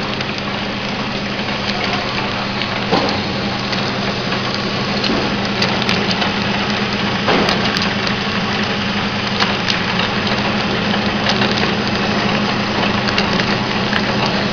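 Three-side-seal liquid packing machine running: a steady motor hum under a dense mechanical clatter, with a few sharper knocks.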